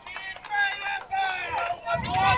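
Background voices at a softball game: a string of short, higher-pitched calls picked up by the field microphone of the radio broadcast.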